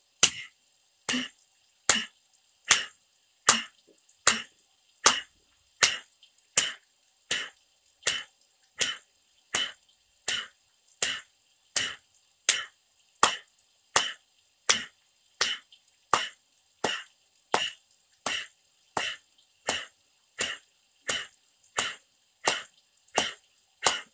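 Single hand claps at a steady even pace, about one and a quarter a second, some thirty in a row. Each clap is the cue for one forceful exhale in Kapalabhati breathing.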